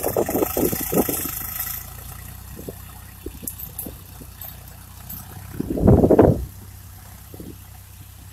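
Swaraj tractor's three-cylinder diesel engine running steadily while pulling a disc harrow across a dry field, a low drone. Wind buffets the microphone with short knocks and one loud gust about six seconds in.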